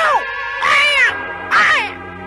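A cat meowing three times, the middle meow the longest and loudest, over steady background music.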